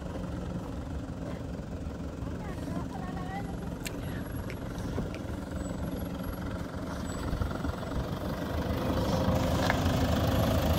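Toyota Land Cruiser Prado engine running at low revs as the SUV crawls over rocks, growing louder from about seven seconds in as it nears.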